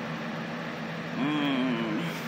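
Steady low room hum, with a person's short, wavering hummed "hmm" starting a little past a second in.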